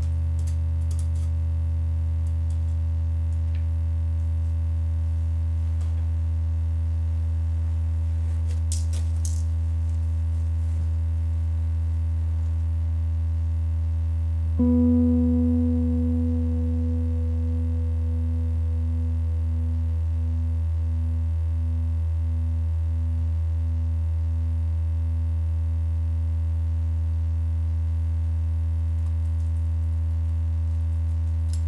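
Experimental electro-acoustic improvised music: a steady low drone with a few faint clicks. About halfway through a single pitched note sounds suddenly and fades slowly over about ten seconds, wavering in a slow pulse as it dies away.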